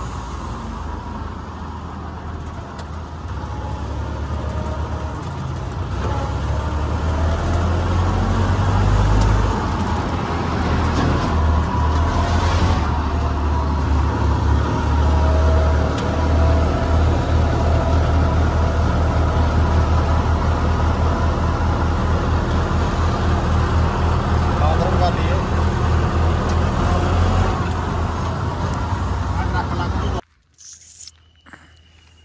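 Self-propelled combine harvester's diesel engine running as it drives along a road, a loud low rumble that builds over the first several seconds and then holds steady.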